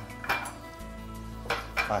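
A few light clinks of metal utensils against dishes, with quiet background music under them.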